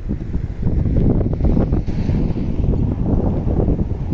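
Wind buffeting the microphone, a loud, uneven low rumble.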